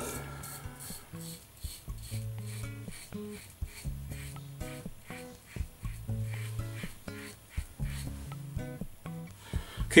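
Safety razor scraping stubble through shaving lather in a series of short strokes, over quiet background music with plucked guitar.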